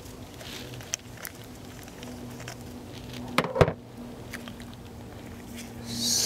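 Handling of an aluminium AC dye injector tool as its top is unscrewed: a few light clicks and one sharper knock about three and a half seconds in, over a steady low hum.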